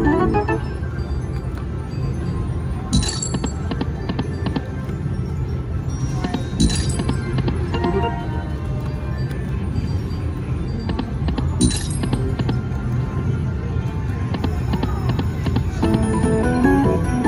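Piggy Bankin slot machine running its game sounds and music through repeated spins, with small win tallies, over a steady low casino din. Three sharp hits stand out, about 3, 6.5 and 11.5 seconds in.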